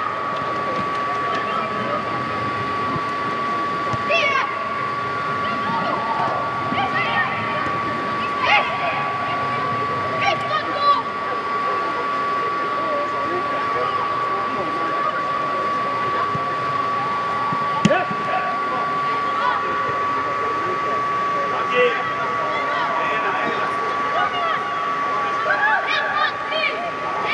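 Steady machine hum with a constant high tone, typical of the inflation blowers of an air-supported sports dome, under scattered high-pitched shouts of children playing football. A single sharp knock comes about two-thirds of the way in.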